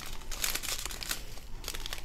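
A strip of small clear plastic bags of diamond-painting drills crinkling as it is handled, a steady run of quick crackles.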